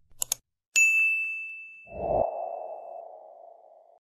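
Subscribe-button animation sound effects: two quick clicks, then a bright notification-bell ding that rings out for about two seconds. About two seconds in, a low, steady sound effect swells in and holds.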